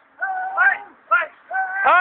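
A voice shouting three short, high-pitched calls in quick succession.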